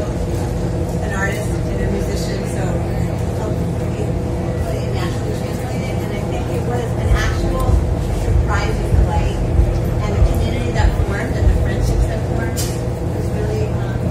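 A woman speaking indistinctly at a press-room microphone over a steady machine hum of several low tones. Low thumps and rumbles come in during the second half.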